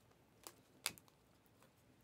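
Near silence with a few faint clicks from trading cards being handled, the sharpest just under a second in.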